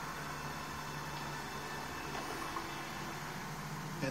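Steady hiss with a low, even hum underneath: background noise of the recording in a gap between spoken sentences.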